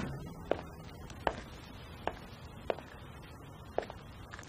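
Footsteps on a wooden floor: five faint, sharp taps spaced a little under a second apart.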